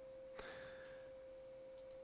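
Near silence: a faint steady electrical hum tone, with one soft click about half a second in.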